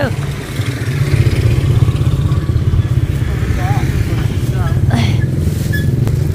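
A vehicle engine idling steadily with a low rumble, with a few short voices and a click over it.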